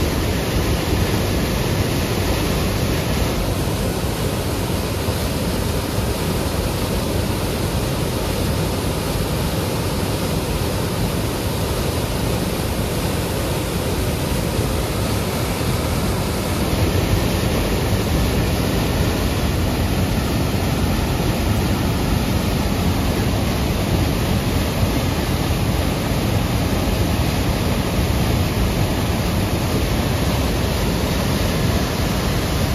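Whitewater rushing over and between boulders in a river cascade, a loud, steady rush of water that doesn't change.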